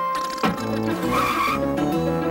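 Cartoon logo jingle with bright mallet and keyboard notes. About half a second in, a cartoon car sound effect cuts in with a quick swoop, then a short tyre-skid screech a little later, before the tune picks up again.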